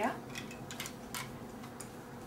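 A few light clicks of small plastic toy blocks being handled and knocked together, spaced irregularly.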